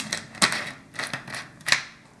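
A handful of short, sharp clicks and taps, about six irregularly spaced in two seconds, from things handled at a table, such as a plastic bottle being picked up.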